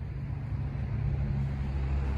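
A low, steady engine hum, as of a motor vehicle running nearby.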